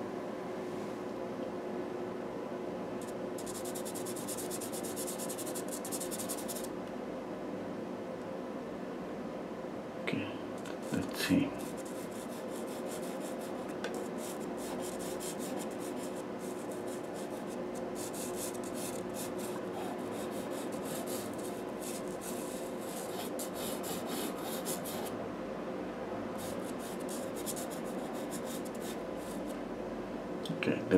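CarbOthello chalk pastel pencil scratching over textured paper in runs of quick hatching strokes, over a steady low hum, with a couple of short soft knocks about ten seconds in.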